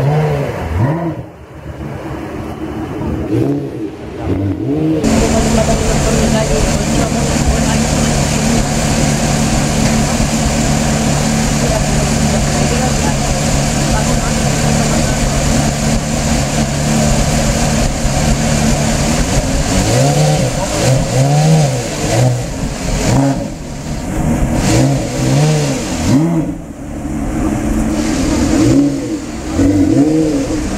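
Porsche Carrera GT's 5.7-litre V10 idling steadily, then from about 20 seconds in blipped several times, the revs rising and falling quickly, as the car starts to pull away.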